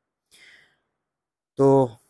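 A man's short, faint intake of breath in a pause in his talking, followed by a single spoken word near the end.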